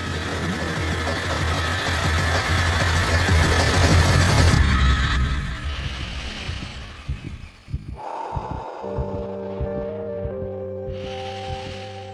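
Churning underwater rush with a deep rumble, swelling for about four seconds and then fading out by about eight seconds in. Soft music with long held notes follows.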